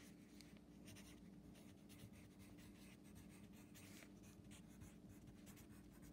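Pencil writing on a paper workbook page: faint, quick scratching strokes as the words "scalene triangle" are written out by hand, over a faint steady hum.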